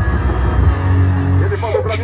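A voice talking over background music, with a steady low hum underneath and a short hiss near the end.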